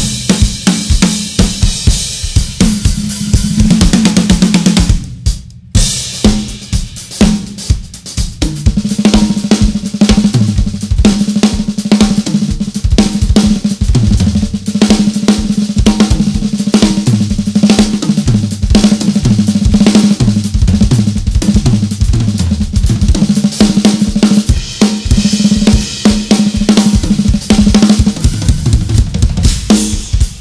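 Two acoustic drum kits, a Sonor and a Pearl, played in a back-and-forth drum solo. Fast fills and grooves run across snare, toms, kick drum, hi-hat and cymbals, with a brief break about five seconds in.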